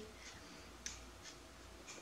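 Near silence: faint room tone with one short, soft click a little under a second in.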